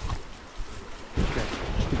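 Wind buffeting the camera microphone over the steady rush of a stream; the low wind rumble grows heavier about a second in.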